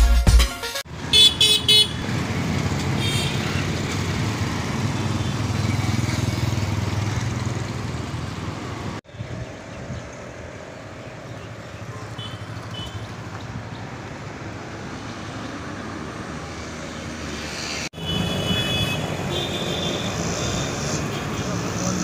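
Street traffic: vehicle and motorbike engines with horns honking, in short bursts about a second in and again near the end.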